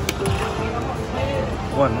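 Lightning Link Tiki Fire slot machine playing its electronic tones as a free spin runs, with a sharp click at the start, over casino background noise.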